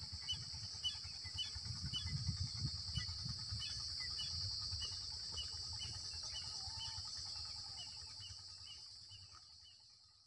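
Rural outdoor ambience: a bird repeats a short chirp about two to three times a second over a steady high-pitched hiss and a low rumble. It all fades out in the last second.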